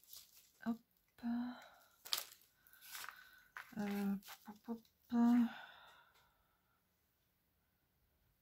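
A woman's voice making a few short, indistinct vocal sounds, with a brief snip and rustle of scissors cutting tulle a couple of seconds in.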